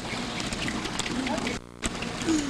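People talking over a constant noisy outdoor background. Near the end the sound drops out for a moment and comes back with a sharp click.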